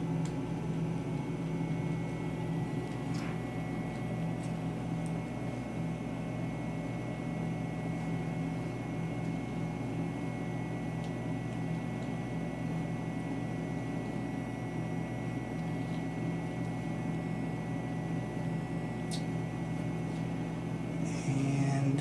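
Steady low machine hum with a thin high whine, broken by a few faint short clicks.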